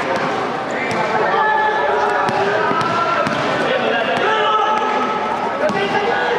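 A basketball bouncing on a court, irregular sharp thuds over the overlapping voices of players and spectators.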